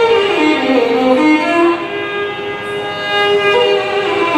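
Carnatic violin playing a sliding, heavily ornamented melodic line in raga Bilahari, with a steady drone beneath it.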